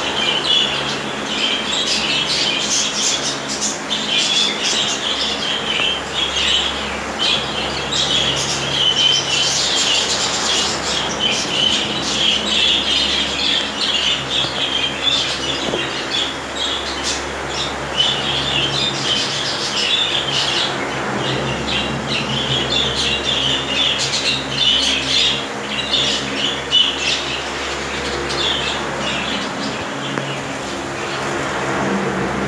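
A roomful of budgerigars chirping and chattering without pause, many calls overlapping, over a steady low hum.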